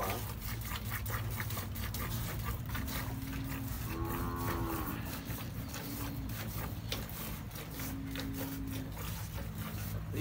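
Cattle mooing: a few long, low, steady calls, the strongest about four seconds in and another near the end.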